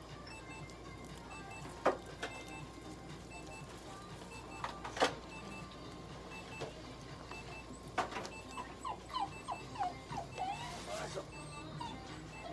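Toy poodle whimpering: a run of short, falling whines from about eight and a half seconds in, after a few sharp clicks earlier on.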